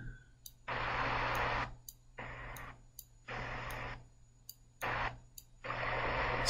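Choppy playback audio from a video editor's preview as the playhead is skipped forward: four short stretches of hiss-like sound, each under a second, cut off abruptly between them, with faint clicks in the gaps.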